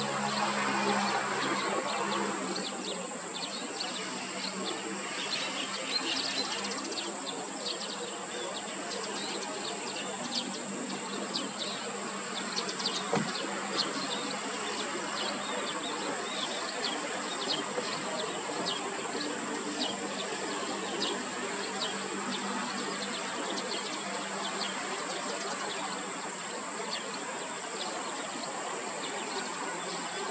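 Steady high-pitched insect buzz, with many short bird chirps and ticks scattered over it. A low engine drone fades away over the first couple of seconds.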